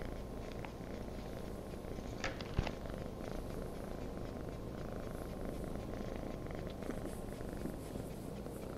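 Calico cat purring steadily while being stroked on the head. A short click a little over two seconds in.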